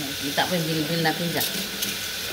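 Steady hiss of a kitchen tap running while dishes are washed by hand, with a brief wordless voice sound in the middle.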